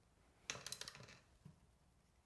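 Light clicks and taps of a paintbrush and palette being handled: a quick cluster about half a second in, then one more small tap a little later.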